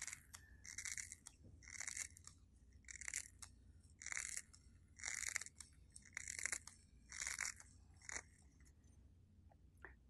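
Scissors snipping through the bristles of a small paintbrush: about eight separate cuts, roughly one a second, stopping near the end. The bristles are being trimmed to about half an inch to stiffen them for stippling resin into composite.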